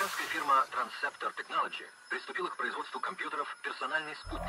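A voice speaking, thin and without bass, in a break in a dance mix. The music fades out at the start, leaving the voice alone.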